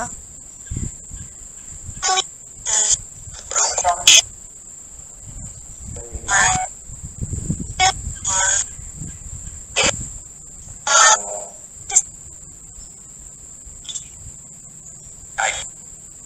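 Spirit box app on a phone sweeping through radio fragments: about a dozen short, choppy bursts of static and clipped voice snippets at irregular intervals, with a steady high-pitched whine underneath. The snippets around the middle are taken as a spirit message, "I... love... you...".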